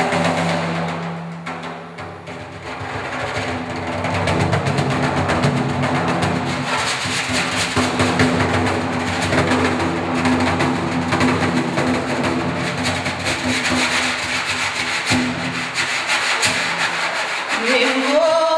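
Frame drum played by rubbing and brushing the hand across its skin, a dense, steady rustling texture that swells about three seconds in. A low held tone sounds underneath.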